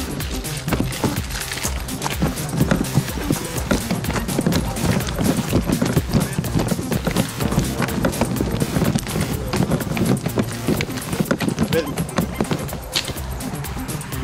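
Running footsteps of a group jogging on a paved path, a dense, irregular patter of shoe strikes that starts about a second in and fades near the end, over background music.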